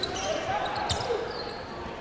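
Indoor basketball game ambience: a low crowd murmur in the gym, with the basketball being dribbled on the hardwood court.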